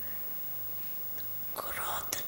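Faint steady electrical hum from the sound system. About one and a half seconds in comes a breathy, whispered voice sound close to the microphone, like an intake of breath or whispered words before speaking.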